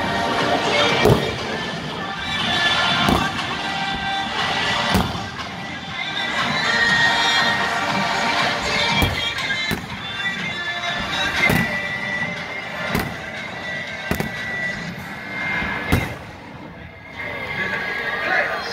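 A large massed marching band playing in a stadium, punctuated every second or two by sharp fireworks bangs that echo around the stands.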